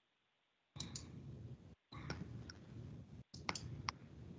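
A few sharp computer clicks over a faint background, two near the start and three near the end. The video-call audio cuts to dead silence at the start and briefly twice more.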